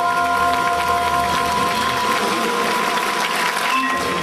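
Audience applauding over the held, ringing final notes of a jazz group led by vibraphone, with piano, bass and drums.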